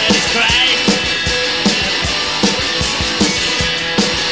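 Garage rock band playing live: electric guitars and bass over a steady drum-kit beat.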